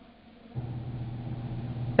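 A steady low hum with a faint hiss, the background noise of the microphone's surroundings, coming in about half a second in after a brief near silence.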